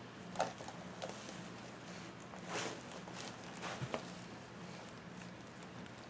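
Faint rustling and scraping of plastic deco mesh being handled and pulled into bubbles on a wire wreath frame, a few soft crinkles coming in short bursts, under a faint steady low hum.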